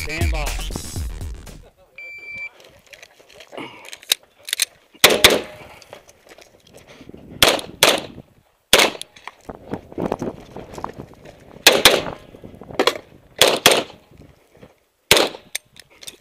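A range shot timer gives a short start beep about two seconds in, and then a 9mm semi-automatic pistol fires about a dozen loud shots, singly and in quick pairs, as the shooter runs a practical-shooting stage. The tail of electronic music fades out at the very start.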